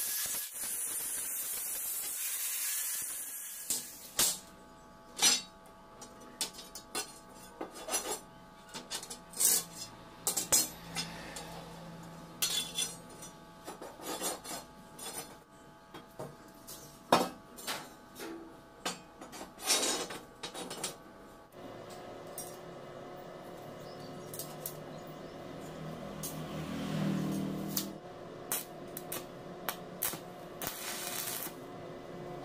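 Steel angle-iron pieces clinking and clanking against each other and the concrete floor as they are handled and set into position, in a run of sharp separate knocks with a few louder ones. A steady hiss fills the first few seconds.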